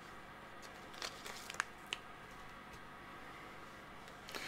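Faint handling sounds of stamping supplies on a craft desk. A few soft taps and a light rustle come between one and two seconds in.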